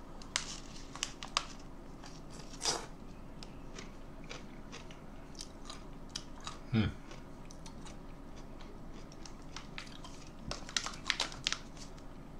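A man biting into and chewing a Van Holten's Tapatio spicy dill pickle, with a few crisp crunches soon after the start and a quick cluster of them near the end.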